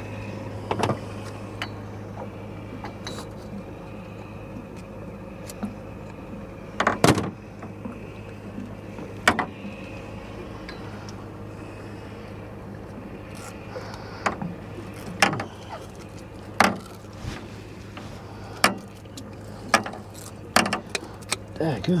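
Sharp metal clicks and clinks from a hand tool working fishing line and a snapped-off jig out of a catfish's gills, about a dozen irregular strikes with the loudest pair about seven seconds in. A steady low hum runs underneath.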